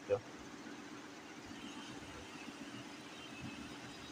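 Faint steady background hum, with faint marker strokes scratching on paper about one and a half to two and a half seconds in.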